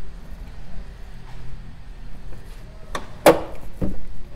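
A pickup's hood being opened: a click, then a loud clunk about three seconds in as the latch lets go and the hood is lifted, and another click just before the end. The truck is a 2015 GMC Sierra 1500.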